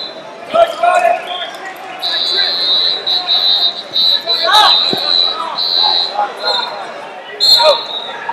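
High, steady whistle blasts in a large hall of wrestling mats: one long blast starting about two seconds in and lasting some four seconds with a brief break, over shouted voices, with a dull thud near the middle.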